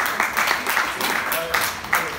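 A small audience clapping unevenly after a song, with voices calling out over the claps.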